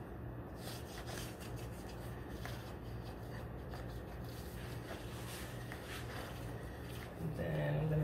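Electrical tape being handled and rubbed down along the seams of a silicone mold box: a run of small, irregular rustles and scrapes over a steady low hum. A voice comes in near the end.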